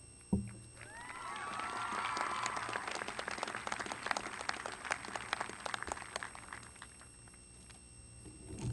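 Outdoor audience applauding, with a few whoops and cheers in the first couple of seconds. The clapping builds, holds, then thins out and fades away about seven seconds in. A single thump comes just before the applause begins.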